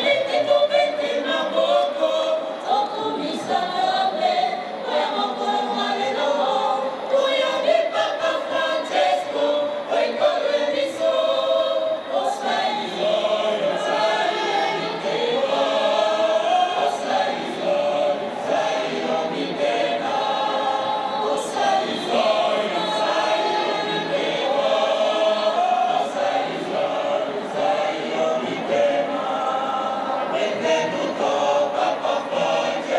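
A choir of many voices singing together, steadily and without a break.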